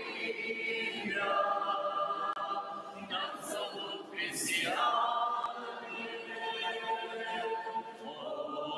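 A large church congregation and choir singing a Russian hymn together, sustained chords sung by many voices with new phrases every second or two.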